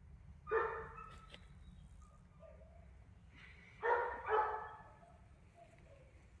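A dog barking: one bark about half a second in, then two quick barks a moment apart near four seconds.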